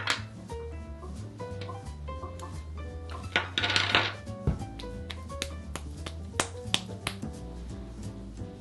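Soft background music with a plucked melody and bass. Small sharp taps and clicks from hands working at a table sit on top of it, with a brief louder rustling burst about halfway through.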